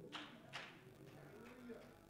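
Near silence: room tone, with one faint soft sound about half a second in.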